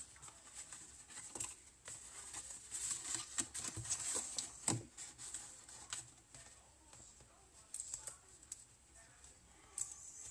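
Faint rustling and crinkling of cardstock being handled and the backing being peeled off adhesive tape strips, with scattered light taps and one sharper tap about halfway through.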